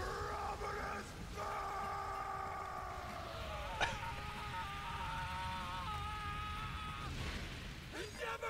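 A drawn-out, strained cry from an anime character on the episode's soundtrack, held for several seconds with a short break about a second in and a sharp click just before four seconds.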